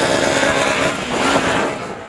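Formula SAE race car's engine running as the car drives by, with some change in pitch partway through and the sound fading out near the end.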